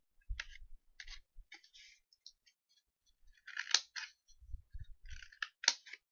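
Scissors snipping through folded construction paper in short bursts of cuts, with the paper crackling as it is handled. The loudest cuts come just past the middle and again near the end.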